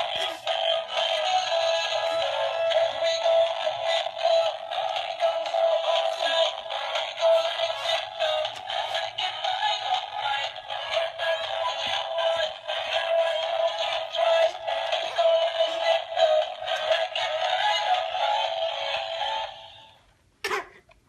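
Animated singing, dancing sock monkey toy playing its song: a synthesized voice singing over a music track, thin-sounding with no bass, from the toy's small speaker. The song cuts off at the very end.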